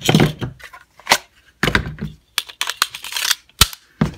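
Hands handling a pistol and its magazine: irregular rustling scrapes and several sharp clicks of metal and polymer parts, the sharpest click near the end.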